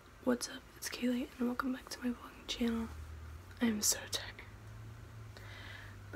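A teenage girl whispering softly to the camera, in short phrases. A low steady hum comes in about halfway through.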